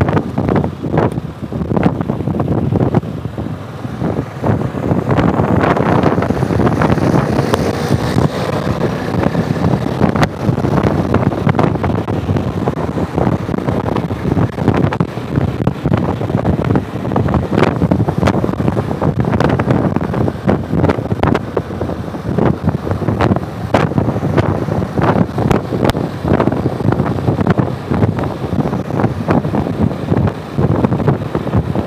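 Wind buffeting the microphone of a camera on a moving motorcycle, a constant rough rush with the bike's engine and tyre noise underneath.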